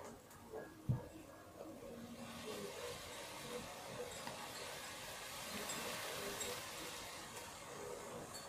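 Faint handling noise as a small plastic toy figure is picked up and held, with one soft knock about a second in, over a low steady hiss.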